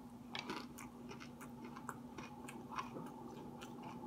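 A person chewing a mouthful of breaded fried food: faint, irregular crunches and wet mouth clicks, a little louder about half a second in.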